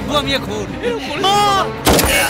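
A single revolver shot, a film sound effect, near the end. It is preceded by a loud, held cry.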